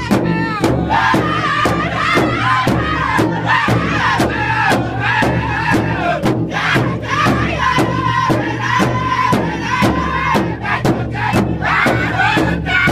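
A powwow drum group singing a crow hop song: several men's voices in unison, high-pitched and wavering, over steady, even beats of a large powwow drum struck together by the singers.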